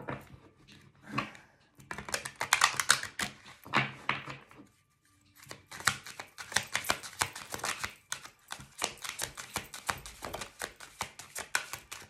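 A deck of tarot cards being shuffled by hand: rapid papery clicking of cards against each other, in two runs with a pause of about a second between them.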